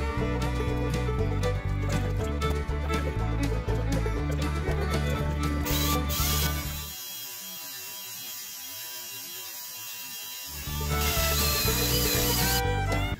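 Background music over a power drill boring a concealed-hinge cup hole in a cabinet door through a Kreg hinge jig. The music drops out for about three seconds past the middle, leaving a quieter noise.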